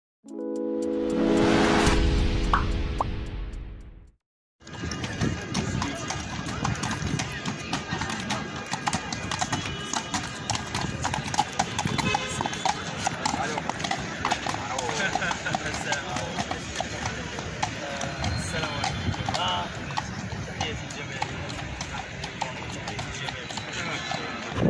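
A short intro chord swells and fades over the first four seconds. Then the hooves of mounted police horses clip-clop on pavement amid the chatter of a crowd, with many sharp clicks.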